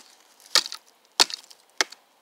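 Burning campfire wood crackling with sharp pops, four loud snaps about every half second.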